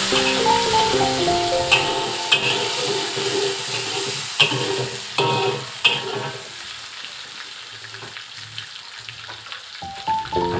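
Sliced garlic, onion and chilli sizzling in hot oil in a steel wok, with a metal spatula scraping and knocking against the wok a few times in the first six seconds. Background music plays over the first half and fades out, leaving the quieter sizzle.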